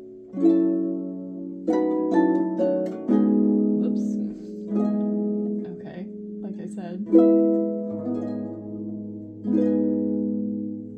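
A Lyon & Healy pedal harp built around 1893, played slowly. Chords and single notes are plucked a second or two apart and each is left to ring into the next. A deep bass note comes in near the end.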